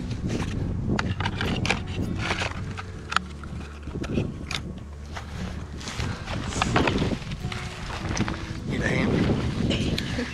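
Wind rumbling on the microphone, with rustling and small clicks of gear being handled and one sharp click about three seconds in.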